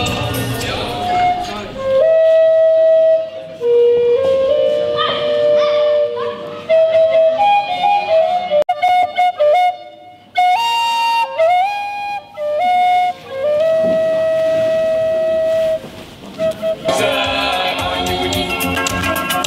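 Music: a single flute-like melody of long held notes with slides between them, played in short phrases with brief gaps, with fuller band music at the start and again near the end.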